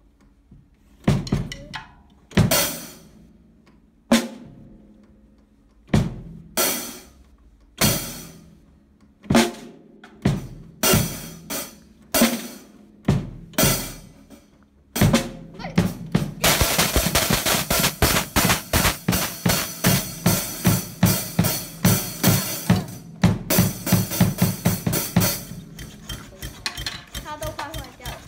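A child playing a drum kit: single, uneven strokes that gradually come closer together, then about halfway through a fast run of hits under a ringing wash like a struck cymbal, easing off near the end.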